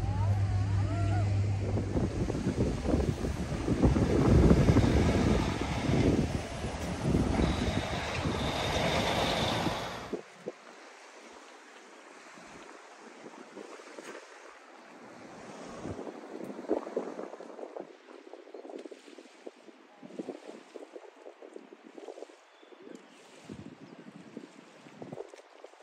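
Wind buffeting the microphone in loud, gusty rumbles, cutting off abruptly about ten seconds in. After that there is only faint outdoor background with small irregular sounds.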